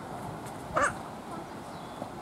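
A single short animal call, just under a second in, over a faint steady outdoor background.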